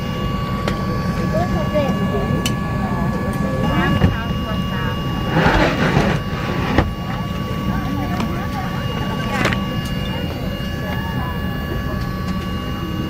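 Boeing 737-800 cabin at the gate during boarding: a steady low hum with a faint high whine, and soft passenger chatter. About five seconds in, a laminated safety card rustles as it is pulled from the seat-back pocket, followed by a short click.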